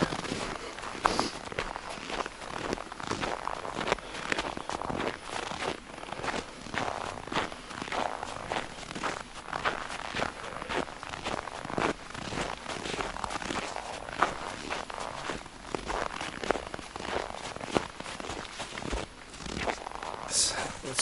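Footsteps crunching in snow, a person walking steadily along a snowy trail, as a run of short irregular crunches.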